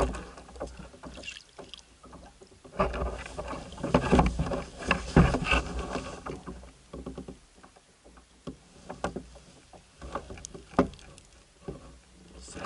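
Irregular knocks, bumps and rustling of a large catfish being handled aboard a plastic kayak, thickest a few seconds in, then quieter with a few sharp clicks near the end.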